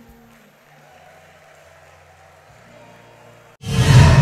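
A saxophone's last held note fades out at the very start, leaving a few seconds of faint hall noise. Near the end a sudden loud sound, the intro of the closing logo animation, cuts in.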